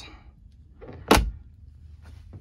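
A cabin locker door on a boat being shut with a single sharp knock about a second in.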